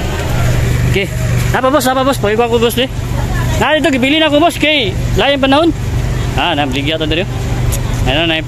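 People talking in short stretches, over a steady low vehicle hum.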